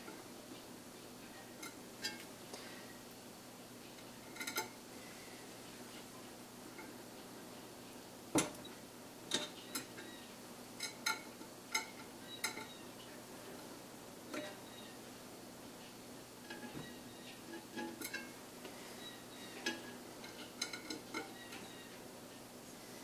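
Scattered small metal clicks and taps of a hex wrench working the set screws of a 3D printer's Z-axis stepper motor shaft coupler. The sharpest click comes about eight seconds in, with quick runs of ticks around ten to twelve seconds and again near the end.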